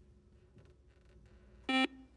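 Quiz-show buzzer sounding once near the end, a short flat electronic beep as a player rings in to answer. Before it there is only faint studio room tone.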